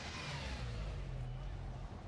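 A whooshing sound effect that peaks at the start and sweeps downward as it fades, over a low, steady synth bass drone: the produced intro of a pop track.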